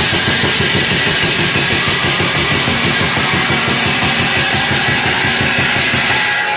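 Folk orchestra playing loudly, driven by fast, dense drumming with a bright shimmer of metal percussion over it.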